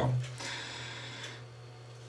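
Playing cards sliding against each other as a deck is spread from hand to hand: a faint, soft rustle that fades out after about a second, over a low steady hum.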